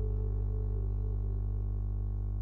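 A steady low drone made of several held tones, with a higher ringing tone that wavers slightly.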